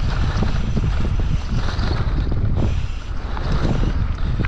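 Heavy wind rumble on the camera microphone from riding a mountain bike fast down dirt singletrack, with frequent small clicks and rattles from the bike and tyres over the rough trail.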